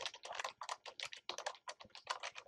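Computer keyboard typing: a quick, uneven run of keystrokes, several a second.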